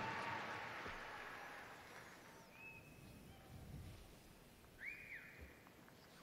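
A hushed arena crowd holding a moment of silence. The echo of the public-address voice dies away over the first couple of seconds, then it is very quiet, with two faint, brief whistle-like tones, the second about five seconds in.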